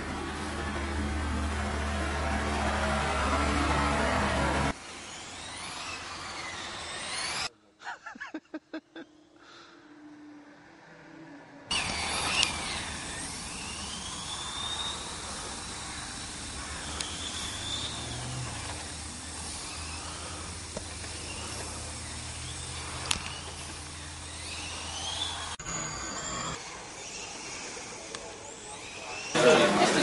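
Electric 1/10-scale RC touring cars racing, their motors making a high whine that rises and falls in arcs as they throttle and pass. The sound drops out for a few seconds about a third of the way in, leaving a few short ticks, then picks up again.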